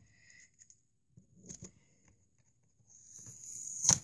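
Faint rustling and scraping as a small taped cardboard toy box is handled. Near the end comes a scratchy hiss that grows louder, like sticky tape being peeled off the box.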